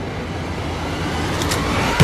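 A rumbling noise that swells steadily louder, with a single sharp click about one and a half seconds in.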